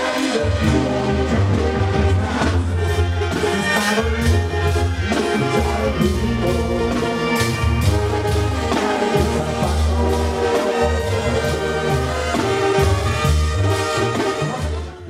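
A banda sinaloense brass band playing live, with brass over a strong, deep, pulsing bass line and a male lead voice singing.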